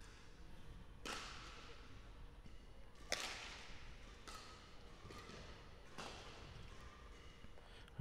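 Badminton rackets striking a shuttlecock during a rally: four sharp hits a second or two apart, faint and echoing in a large hall.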